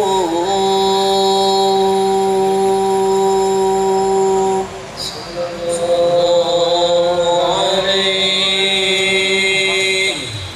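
A man's voice chanting a qasidah, holding one long steady note for about four seconds, breaking off briefly, then drawing out a second long note.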